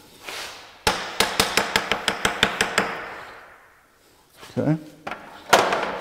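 A hammer tapping a steel workpiece down onto the parallels in a milling vise: a quick run of about a dozen light knocks, roughly six a second, fading away. The tapping seats the work so the vise pulls it down flat and the parallels are tight.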